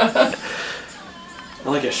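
A short laugh, then a quieter stretch with faint voices in the room before someone starts to speak near the end.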